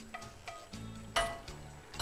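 Background music, with a single sharp knock of a utensil against the frying pan a little over a second in as the eggplant and sauce are stirred.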